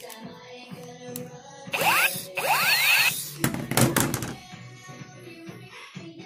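Background music, with two rising whistling swoops and then a short loud noisy blast about three and a half seconds in: the sound of a toy gun being fired.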